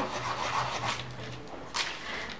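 A stick of chalk rubbed over the back of a sheet of printer paper, a soft scratchy rubbing, with a short sharper scrape near the end.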